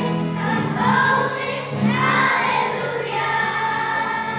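Children's choir singing.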